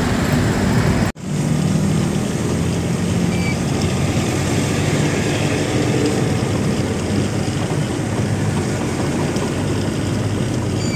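Truck engine running steadily while driving, heard from inside the cab over road noise. The sound cuts out for an instant about a second in, then resumes.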